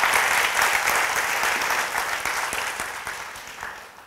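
Audience applauding, the clapping dense at first and dying away over the last second or so.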